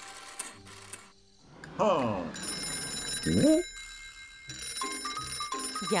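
Cartoon telephone ringing, two stretches of ringing over light background music, preceded by a couple of sliding-pitch cartoon sound effects.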